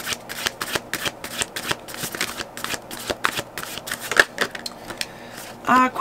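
A tarot deck being shuffled by hand: a quick run of papery card flicks and riffles that thins to a few separate clicks in the second half.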